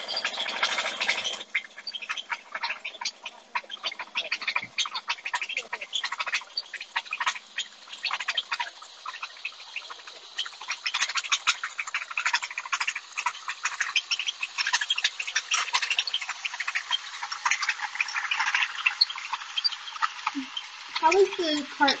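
Small gasoline engine of a tea-plantation monorail cart running, heard as a rapid, irregular clatter through thin live-stream phone audio.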